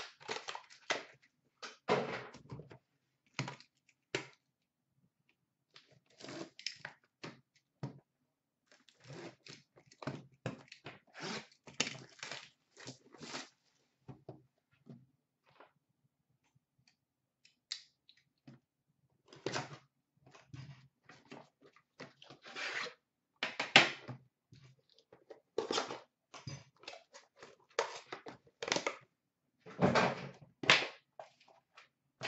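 Hockey card boxes and packs being handled and torn open: irregular rustling and tearing of wrappers and cardboard, with light knocks as boxes are set down on a glass counter. The handling pauses briefly about halfway through, and the sharpest knock comes about three-quarters of the way through.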